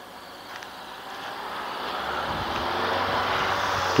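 A road vehicle approaching, its engine and tyre noise growing steadily louder.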